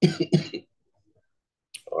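A man coughing twice, two short harsh coughs in quick succession right at the start.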